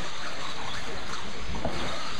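Electric 1/10-scale 2WD RC buggies running on an indoor dirt track: a steady wash of motor and tyre noise in a large echoing hall, with a low thud about one and a half seconds in.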